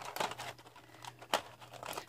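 Light rustling and a few soft clicks of hands handling Derwent Inktense wooden pencils in their metal tin tray.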